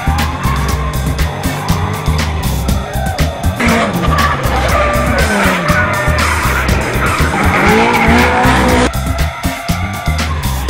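Drifting cars, engines revving up and down with tyres squealing, over music with a heavy beat. The engine and tyre noise swells a few seconds in and cuts off suddenly about a second before the end.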